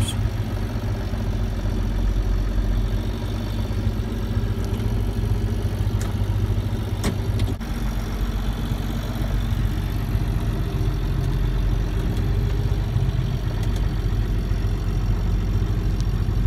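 John Deere tractor's diesel engine running steadily, heard from inside the cab as a constant low hum, with a few faint clicks about six to seven seconds in.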